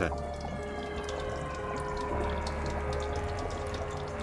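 Background music of held, drone-like tones over a steady low hum, with faint scattered clicks.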